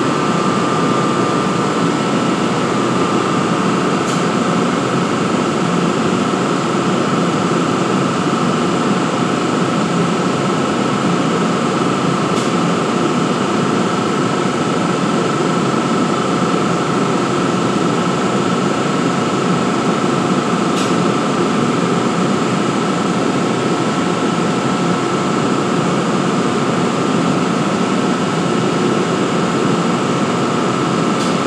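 NJ Transit ALP-46A electric locomotive standing at the platform with its cooling blowers running: a steady rush of air with a constant high whine on top.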